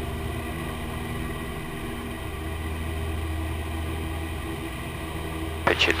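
Cessna 172P's four-cylinder Lycoming engine and propeller at full power on the takeoff roll, a steady drone heard inside the cabin.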